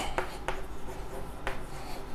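Chalk writing on a blackboard: faint scratching with a few light taps as the chalk strikes the board.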